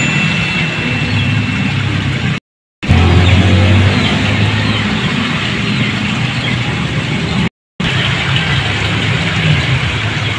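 Steady loud background din with a low hum, broken twice by a sudden, complete silence of a fraction of a second, about two and a half and seven and a half seconds in.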